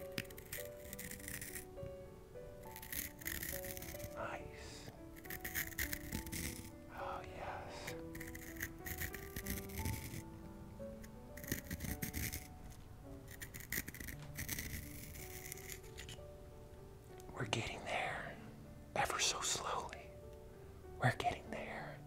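Wooden pencil being turned in a small handheld sharpener close to the microphone: repeated short scraping bursts of shaving, about one every second or two, over soft background music.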